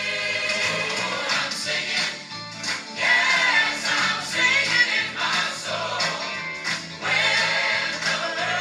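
Gospel choir and audience singing with instrumental accompaniment, played through a television's speakers. It dips briefly about two seconds in, then swells back up.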